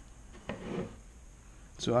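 A small hand blade scraping once along the seam of a metal engine-computer case as it cuts through the material sealing the case shut, about half a second in.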